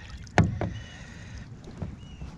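A plastic fish measuring board, just dipped in the lake, brought aboard a plastic kayak: one sharp knock about half a second in as it strikes the hull, then faint water and handling sounds, with a lighter knock near the end.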